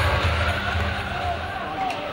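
Arena music over crowd noise after a goal, the music's bass cutting out about one and a half seconds in, with indistinct voices.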